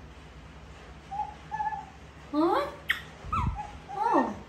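Baby macaque giving short, high, whistle-like coo calls: a couple of faint held notes, then several calls that glide up and down in pitch. A sharp click and a soft low thump come near the end.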